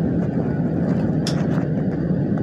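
Steady low rumble inside an LA Metro rail car, with a brief faint hiss just past a second in.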